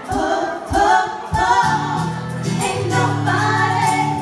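Female voices singing together in harmony over acoustic guitar, with a few low thumps in the first second and a half.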